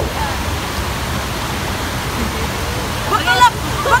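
Steady rushing of fountain water, with a short burst of laughter about three seconds in and again near the end.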